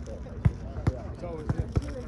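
Soccer balls being kicked on grass during a warm-up, about five short, sharp thuds spread through the moment, over the chatter of players' voices.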